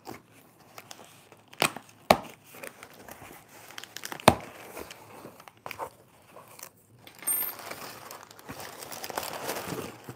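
A cardboard shipping box being opened by hand: a few sharp snaps and taps in the first half, then crumpled kraft packing paper crinkling and rustling as it is pulled out of the box over the last few seconds.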